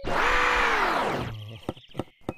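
A comic sound effect: a loud, noisy pitched sound that slides steadily down over about a second and a half and then stops, followed by a few light clicks.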